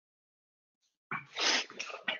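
A person sneezing into the microphone: a sudden burst of about a second, starting about a second in, after silence.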